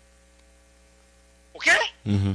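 Faint steady electrical mains hum in the recording, heard in a pause in speech. A man's short spoken word ("ok?") comes near the end.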